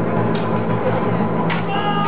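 Steel broadswords clashing in stage combat: two sharp strikes, about a third of a second in and about a second and a half in, the second followed by a short high ringing tone near the end.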